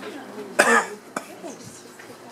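A person coughs once, loudly, about half a second in, followed by a brief sharp click.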